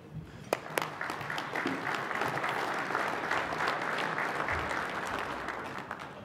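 Audience applauding, swelling up within the first second, holding steady, then thinning out near the end.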